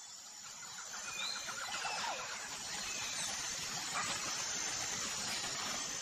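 An intro sound effect: a steady hiss that swells up and holds, with a few short chirps and a quick trill about one to two seconds in.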